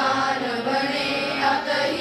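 A group of children chanting a prayer in unison into microphones, voices held on sustained notes.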